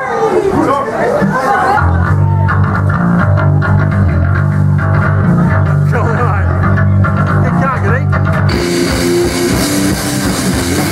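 Voices in a crowded club, then from about two seconds in guitar and bass play low held notes; about a second and a half before the end the drums and cymbals crash in and the punk band launches into a song.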